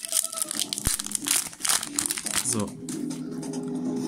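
A foil-wrapped Yu-Gi-Oh! booster pack being torn open by hand, its wrapper crinkling and crackling mostly in the first two and a half seconds.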